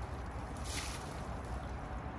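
Water thrown from a metal jug splashing onto a tractor, one short splash a little over half a second in, over a steady low hum.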